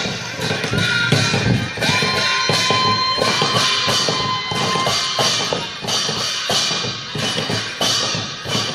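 Newari barrel drums (dhimay) beaten with stick and hand in a fast, steady run of strokes for a Lakhe street dance, with a metallic ringing above the beats.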